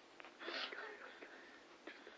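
Faint, breathy laughter from a person, loudest about half a second in, with a few soft clicks.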